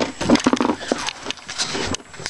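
Irregular clicking, rustling and scraping handling noise close to the microphone, as a coax cable and wires are moved into position.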